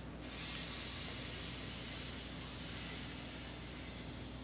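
A long, slow breath hissing close to the microphone, lasting about four seconds and fading gradually toward the end.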